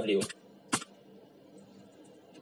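The tail of a spoken word, then a single sharp click about three-quarters of a second in, followed by faint room tone.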